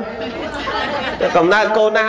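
A man's voice preaching in Khmer into a microphone, continuing a Buddhist sermon; the speech grows louder a little past the middle.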